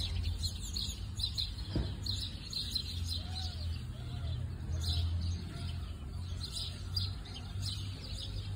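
Many small birds chirping over and over in quick, overlapping calls, over a steady low rumble.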